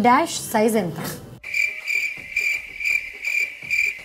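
Cricket-chirping sound effect: a steady high trill pulsing about three times a second that cuts in suddenly about one and a half seconds in, the comic 'awkward silence' cue.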